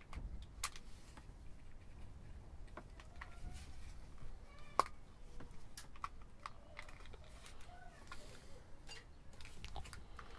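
Faint clicks and rubbing of plastic as a handheld PMR446 walkie-talkie's casing is fitted and pressed together by hand, with one sharper click about halfway through.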